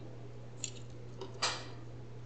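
Handling noises from gloved hands working a laptop motherboard loose from its plastic chassis: a sharp click about half a second in, then a brief scrape about a second and a half in. A steady low hum runs underneath.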